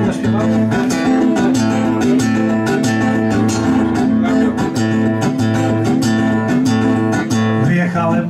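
Steel-string acoustic guitar strummed in a steady rhythm, playing the instrumental introduction of a song, with the chord shifting every second or two.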